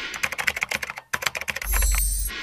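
Computer keyboard typing sound effect: a fast run of key clicks, about a dozen a second, with a short break about a second in. A low boom comes in near the end.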